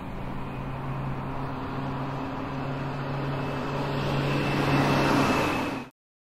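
Street traffic noise with a steady low engine-like hum, swelling louder near the end and then cutting off suddenly.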